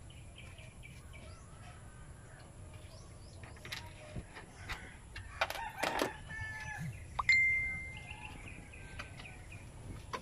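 A rooster crowing in the background, its call coming about six to eight seconds in, over scattered clicks and knocks of a compact horn and its bracket being handled in the car's engine bay.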